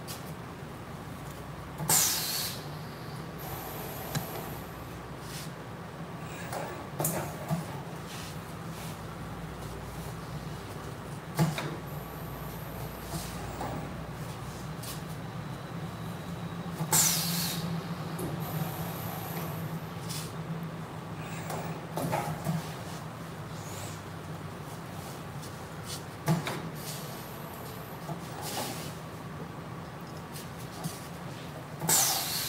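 Steady low hum of running print-shop machinery, with two short loud hissing bursts, about two seconds in and again about seventeen seconds in. A few sharp knocks come as shirts are loaded onto the screen-printing press.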